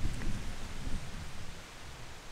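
Wind blowing on the microphone: a low rumble with a hiss above it, easing off toward the end.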